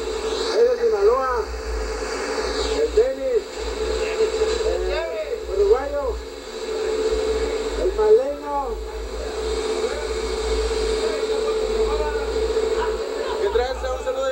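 Men's voices calling out in short, rising-and-falling bursts over a steady droning hum, heard through a camcorder tape re-recorded off a TV.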